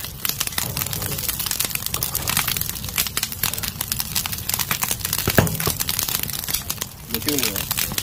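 Charcoal fire crackling and popping rapidly and continuously under shellfish roasting on a wire grill, with voices coming in near the end.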